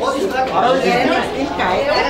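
Several people talking at once in a crowded room: overlapping chatter among party guests.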